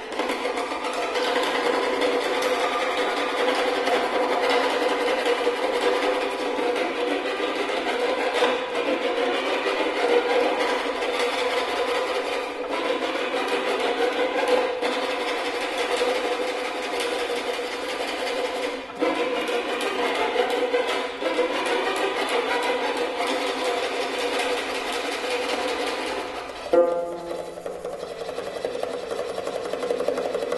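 Prepared, amplified violin bowed in a dense, grainy, buzzing texture with a steady held pitch running through it. About 27 seconds in, a sharp accent sounds and the texture turns thinner and lower.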